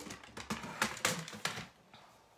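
A quick run of light clicks and knocks from a plastic scoring board and its scoring tool being picked up and put away; it dies away shortly before the end.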